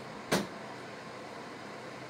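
A single sharp knock of a plastic measuring jug against a stainless-steel kitchen sink, about a third of a second in, over a steady hiss.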